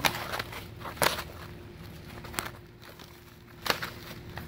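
Granule-surfaced architectural asphalt shingles being peeled up from a stack and flexed by hand: a gritty rustle broken by about four sharp crackles and slaps as the sheets come apart, not stuck together.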